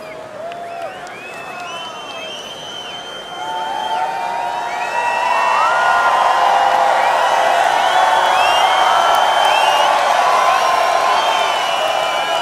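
A large festival crowd cheering, whooping and yelling. Many voices overlap, and the cheering swells to much louder about four seconds in.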